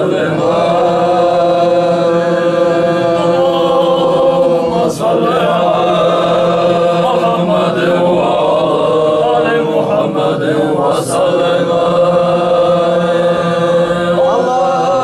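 Unaccompanied male chanting of a mawlid, a sung Islamic praise of the Prophet, in long melodic held notes with a brief pause for breath about five seconds in.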